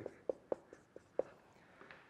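Marker writing on a whiteboard: about five short strokes in the first second and a quarter.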